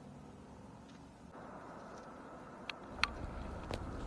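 Faint road and engine noise heard inside a moving pickup truck's cab, getting a little louder about a second in, with three sharp clicks near the end.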